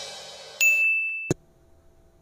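Tail of an intro jingle: a cymbal crash dies away, then a single bright ding sounds about half a second in and is cut off by a click about a second later.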